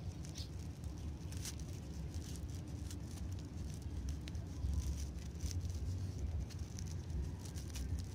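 Faint rustling and scattered soft clicks of a three-strand rope being worked by hand as a knot is pulled tight in its unlaid strands, over a steady low rumble.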